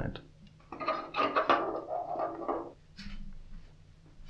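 Hard plastic clatter as a handheld digital light meter and its sensor are picked up off a counter and handled, then a sharp click about three seconds in.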